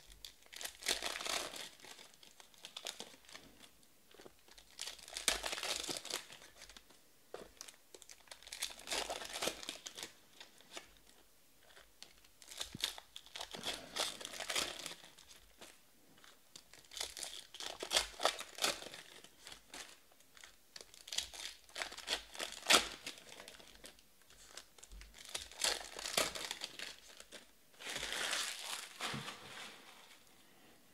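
Wrappers of Panini Select football card packs being torn open and crinkled by hand, one rustling, crackling burst every three to four seconds, about eight in all.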